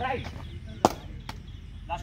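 A cricket ball smacking into a wicket-keeper's gloves: one sharp slap a little under a second in, followed by a fainter click.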